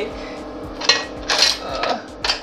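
Countertop blender motor running on puree with a steady hum, while hard frozen mango chunks clatter against the plastic jar a few times about a second in. The chunks are not being drawn down into the blades, so the fruit is not blending.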